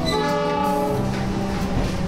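Train horn blowing briefly, a chord of several steady tones that fades after about a second, over a steady low sound.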